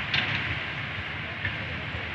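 Steady background noise of a large hall: a low hum with an even hiss.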